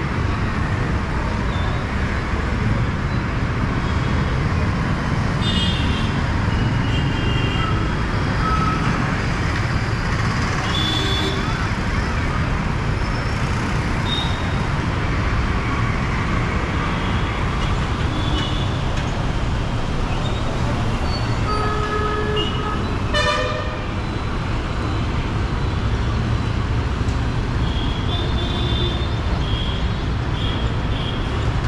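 Busy mixed city traffic of buses, motorcycles and auto-rickshaws: a steady low rumble of engines and tyres. Short vehicle horn toots sound again and again through it, the loudest about three-quarters of the way through.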